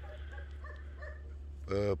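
Several faint short dog barks in the distance during the first second or so, over a low steady rumble. A man's voice begins near the end.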